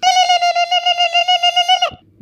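One long held high note, level in pitch, with a fast pulsing wobble in loudness, stopping abruptly just before two seconds.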